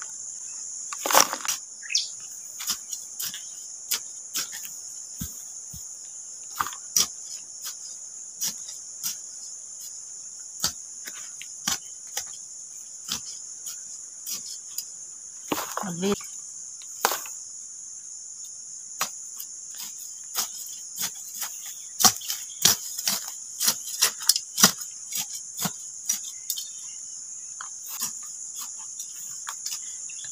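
Crickets or similar insects droning steadily at a high pitch, with irregular sharp snaps and rustles of grass and weeds being pulled up by hand and tossed into a plastic tub.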